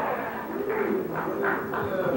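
A voice making drawn-out wordless sounds that slide up and down in pitch, without clear words.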